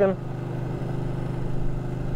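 Ducati 1299 Panigale's L-twin engine running steadily as the motorcycle cruises at an even speed, a constant drone with no revving.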